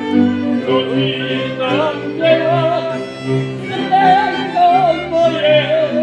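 Moravian folk song: a male singer with a cimbalom band accompanying him on violins, clarinet, cimbalom and double bass, with a wavering, vibrato-laden melody over a steady bass line.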